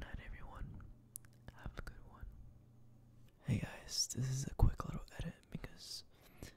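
A person whispering close to the microphone, quiet and broken up at first and louder from about halfway through, with small mouth clicks between words.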